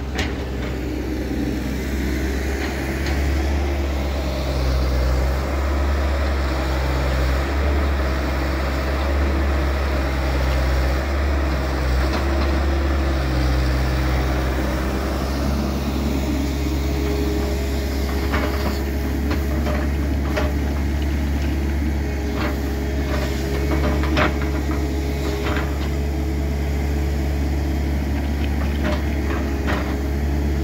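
Caterpillar tracked excavator's diesel engine running with a deep steady hum and a constant higher tone, its note stepping up and down as the hydraulics take load while the bucket moves earth. From a little past halfway in, scattered sharp knocks and clatters.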